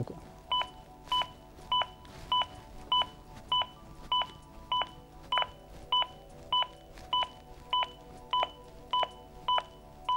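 ZOLL AED Plus defibrillator's CPR metronome beeping steadily: a short two-tone beep about every 0.6 seconds, roughly 100 a minute, setting the pace for chest compressions.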